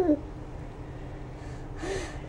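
A last laugh syllable right at the start, then a steady faint hum, and a breathy gasp near the end.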